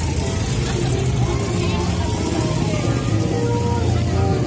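Music playing continuously, with sustained tones over a steady deep bass, and voices mixed in.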